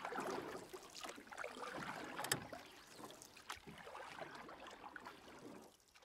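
Water sloshing and bubbling with small splashes and clicks, irregular in level, fading out near the end.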